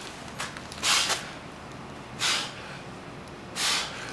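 A man breathing hard and forcefully through heavy dumbbell shoulder presses: three sharp breaths, about a second and a half apart, in rhythm with the reps.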